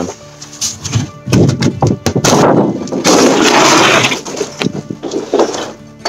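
Rigid foam insulation board being broken and crumbled out of a timber wall, crunching and crackling for about three seconds in the middle, then a few scattered cracks.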